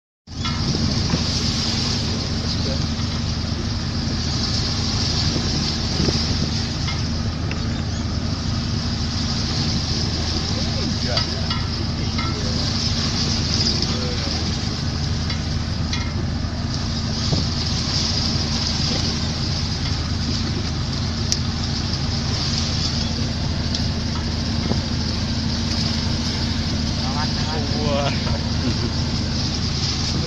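A boat's engine running steadily with a low drone, under a rush of wind and waves that swells and fades every few seconds.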